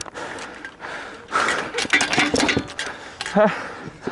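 A close exchange in gladiator sparring: a rapid flurry of knocks and clatter from weapons, shields and armour about a second and a half in, with voices mixed in. A short shout follows near the end.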